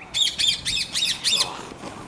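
A bird squawking: a quick run of about six harsh, high calls in just over a second, then stopping.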